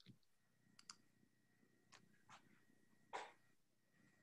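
Near silence, broken by a few faint, short clicks, the clearest a little after three seconds in.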